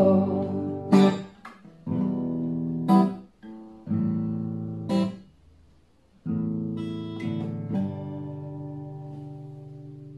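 Acoustic guitar playing a song's closing chords: single strums about every two seconds, then a final chord a little past the middle that is left to ring and slowly fade.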